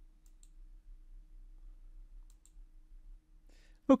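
Two faint computer mouse clicks, about two seconds apart, over a low steady hum.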